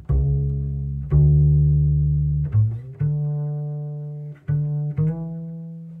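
Solo double bass played pizzicato: a slow bass line of single plucked notes, about six, roughly one a second, each ringing and fading away before the next.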